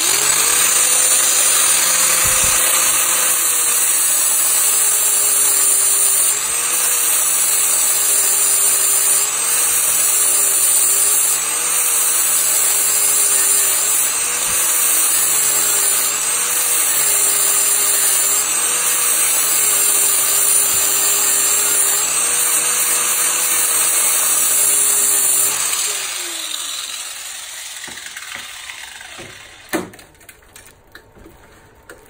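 Angle grinder with a flap disc grinding through the folded edge of a steel car door skin to separate it from the frame. It starts at once and runs with a steady whine that sags in pitch every two or three seconds as it bites into the metal. It is switched off near the end and winds down.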